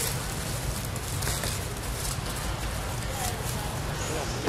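Outdoor background: faint, indistinct voices over a steady low rumble, with scattered light rustling.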